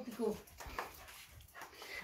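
Small dog whining in short falling whines in the first moment, excited at its owner's return, then mostly quiet.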